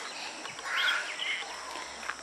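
Rural outdoor ambience: a steady high insect drone, with a short chirping call just under a second in and a fainter one soon after.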